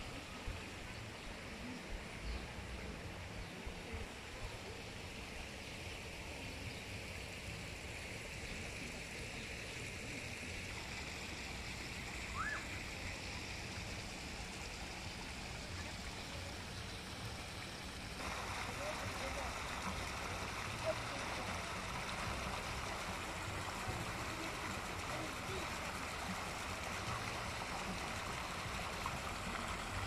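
Water gushing from a pipe outlet into a shallow pond: a steady rushing that gets louder about two-thirds of the way through.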